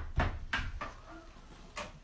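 A spatula knocking and scraping against the inside of a roaster oven's pot while thick hot process soap paste is stirred by hand: a few irregular clacks, with a sharp one near the end.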